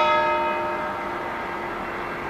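Church bell struck once, its many tones ringing on and slowly fading.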